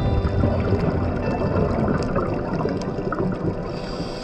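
Muffled underwater rumble and irregular bubbling picked up by a diving camera, fairly loud and churning.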